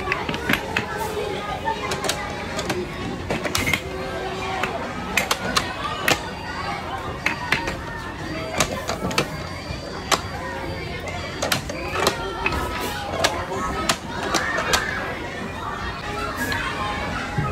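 Plastic tiles of a wall-mounted sliding-block puzzle clacking as they are pushed along and knocked into place: many short, sharp, irregular clicks over a babble of children's voices.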